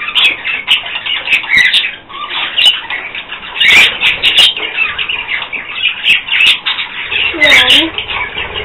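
A flock of budgerigars chattering and warbling continuously in quick, overlapping chirps. A girl laughs briefly near the end.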